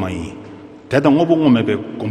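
A man speaking, with a short pause just before the middle.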